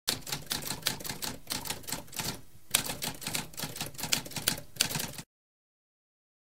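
Typewriter keys clacking in a quick run of strikes, with a short break near the middle, stopping abruptly a little after five seconds in.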